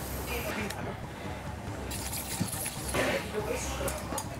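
Faint, indistinct voices in a busy studio kitchen, with a few light clinks of metal tongs and utensils against pans and plates.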